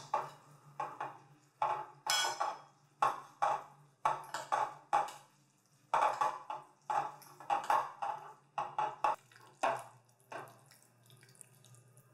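Two metal forks tossing fettuccine in a glass bowl to coat it in butter and grated Parmigiano-Reggiano. It makes short repeated strokes, about one or two a second, with clinks of fork against glass, stopping near the end.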